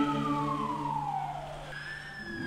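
A vehicle siren wailing: one long tone falls steadily, dies away, and starts again high near the end. Chanted singing fades out under it in the first half.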